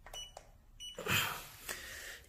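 Handheld laser distance meter beeping twice, short high beeps about 0.7 s apart as it takes a measurement, followed about a second in by a brief burst of noise.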